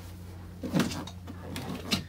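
Barefoot steps down wooden cabin steps: two short knocks, the second near the end, over a low steady hum, with a brief murmur of voice a little under a second in.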